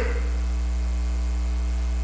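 Steady low electrical mains hum in the microphone and sound system, with fainter steady higher tones above it.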